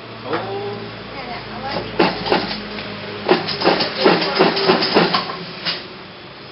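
Voices talking over the steady low hum of an industrial sewing machine's motor; the talking is loudest from about two seconds in until shortly before the end.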